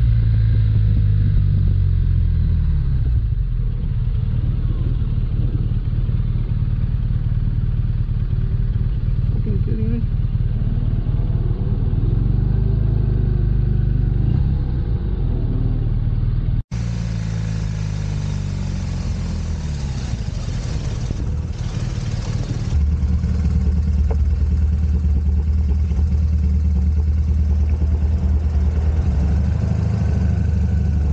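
Touring motorcycle's engine running while the bike slows to a stop, with rising and falling pitch as it is throttled and decelerated. About halfway through there is an abrupt cut, after which the engine keeps running and settles into a steady low drone.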